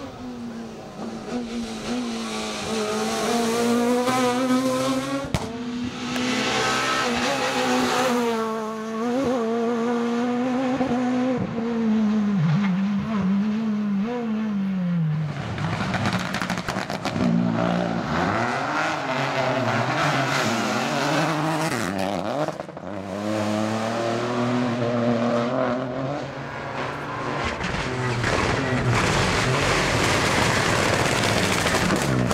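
Rally cars, among them a Peugeot 208, passing at full throttle one after another. Each engine revs up and falls sharply in pitch at gear changes and as the car goes by.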